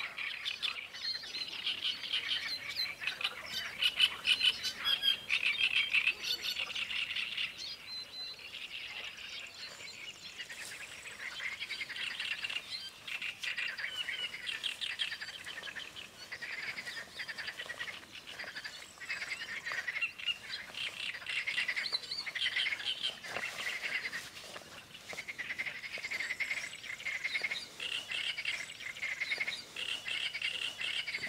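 A chorus of small songbirds chirping and trilling without a break, rapid twittering phrases overlapping one another, busiest in the first few seconds.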